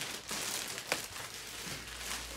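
Clear plastic wrap crinkling as it is pulled and peeled off a large cardboard box, with one sharp snap about halfway through.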